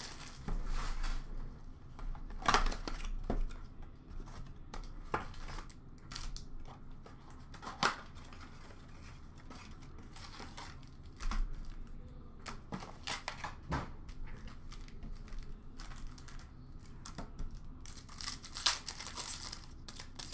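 Hands opening a 2016-17 Upper Deck Series 1 hockey Mega box: scattered crinkling, tearing and light taps of cardboard and plastic as the packs of cards are pulled out, busier near the end.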